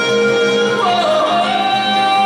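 Live folk music: a man sings a long held note that leaps up in pitch a little under a second in, yodel-like, while he bows a fiddle and acoustic guitar is strummed behind.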